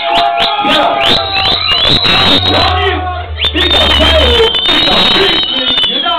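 Dancehall sound-system effects in a loud club: a quick run of rising electronic zaps, a deep bass boom in the middle, then a high electronic siren tone held for about two seconds, over a shouting crowd.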